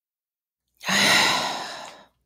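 A person's long, audible sigh, beginning just under a second in: a breathy exhale with a brief voiced start that fades away over about a second.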